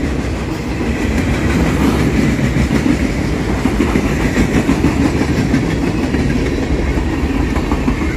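Freight cars of a CSX freight train rolling past close by: steel wheels running on the rails, loud and steady throughout.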